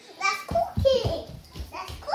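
Young children's voices, untranscribed chatter or babble, with low thumps as a small child runs in on a wooden floor.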